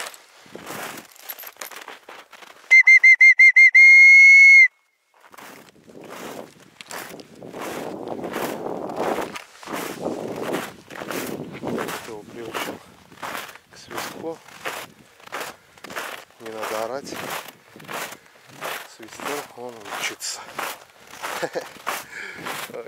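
A whistle blown to call a dog back: a quick trill of rapid pulses that runs into a held high note and stops sharply after about two seconds, by far the loudest sound here. Footsteps crunch through snow at about two steps a second before and after it.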